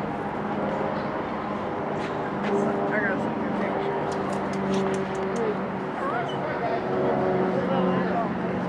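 A steady low mechanical hum, like an idling engine or machinery, with a few short high chirps and faint voices in the background.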